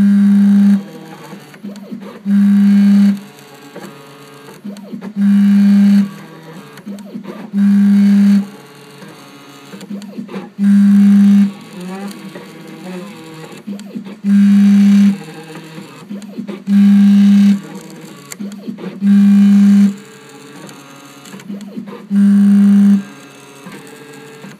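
A small CNC engraving machine at work: its motors give a loud, steady, low buzz lasting under a second, about every two and a half seconds, nine times, with quieter shifting whines from the axes in between.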